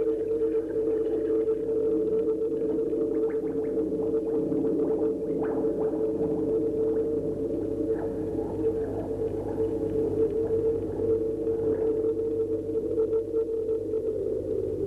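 Musique concrète soundtrack: a steady electronic drone of two low held tones, with faint scattered clicks over it.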